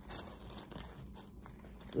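Faint rustling of a thin knit sweatshirt's fabric being handled and shaken out, with a couple of light ticks past the middle.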